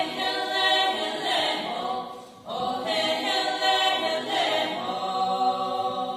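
A small women's choir singing together unaccompanied, in two long sung phrases with a brief breath between them about two seconds in.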